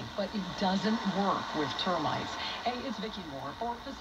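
AM broadcast speech playing from a radio receiver's loudspeaker, with a steady hiss of static underneath: the receiver is on a 40-foot long-wire antenna that is picking up a lot of noise.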